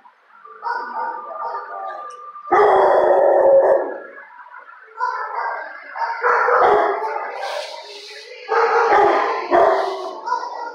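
A dog howling in several drawn-out bouts, with short bark-like bursts near the end. The loudest bout comes between about two and a half and four seconds in.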